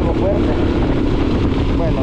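Motorcycle engine running steadily while riding, with a dense rush of wind noise on the microphone over it.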